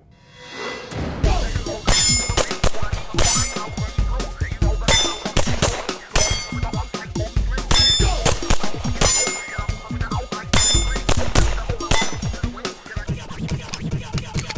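Strings of rapid pistol shots from a Smith & Wesson M&P40 Pro Series 5-inch in .40 S&W, with steel plate targets ringing as they are hit, under background music with a beat.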